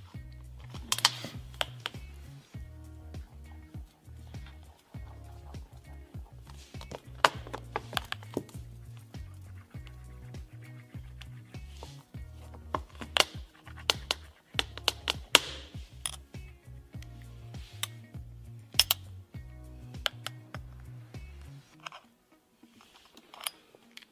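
Background music with a steady bass line, over irregular sharp clicks and scrapes of a metal key being scratched across an iPhone 8's glass back. The music stops about two seconds before the end.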